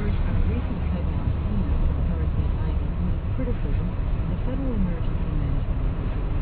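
An NPR radio news broadcast talking faintly under a steady low rumble.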